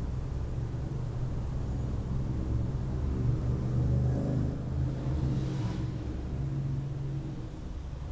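Low engine rumble of a motor vehicle, swelling to a peak about halfway through and then easing off, as of a vehicle passing.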